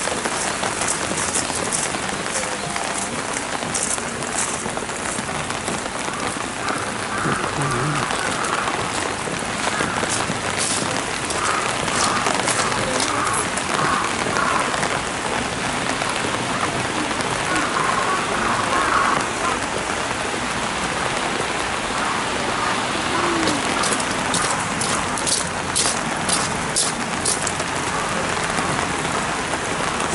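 Heavy rain falling steadily. Clusters of sharp, close drop ticks come in at the start, again in the middle and again near the end.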